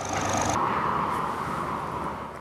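Tractor engines running in a queue of beet-laden trailers, heard as a steady noisy background that swells and then fades toward the end.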